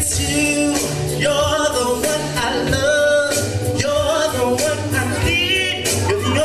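A man singing into a microphone over a pop/R&B backing track with bass, drawing out long, wavering held notes without clear words.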